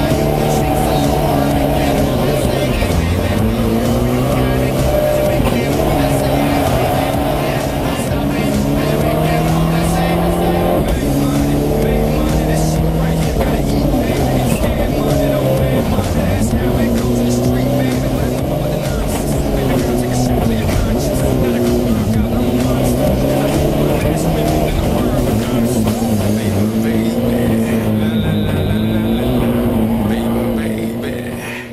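Race car engine heard from inside the roll-caged cabin, revving up and dropping back again and again through gear changes, over background music.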